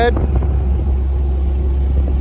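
Steady low drone of a pickup truck's engine and road noise heard inside the cab while it pulls a heavy loaded car-hauler trailer.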